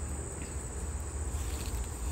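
A steady, unbroken high-pitched insect trill over a low rumble.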